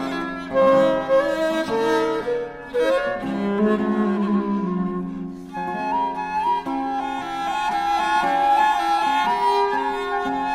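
Baroque trio on period instruments playing a chaconne: a baroque transverse flute (traverso), a bowed viola da gamba and a plucked theorbo. The flute's high held notes come forward about halfway through, over the gamba's bowed lower line.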